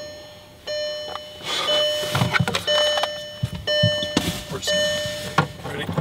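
Five evenly spaced electronic beeps inside a car cabin, each a steady tone held nearly a second, about one a second, with a few soft knocks between.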